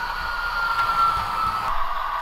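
Model diesel locomotive's Tsunami2 sound decoder playing diesel engine sound through the locomotive's onboard speaker as the model runs, with a high whine that slowly falls in pitch and stops about one and a half seconds in.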